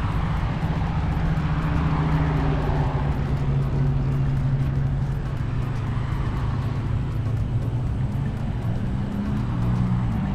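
Car traffic on a road across the canal: a steady low engine and tyre hum, rising and falling slightly in pitch as vehicles go by.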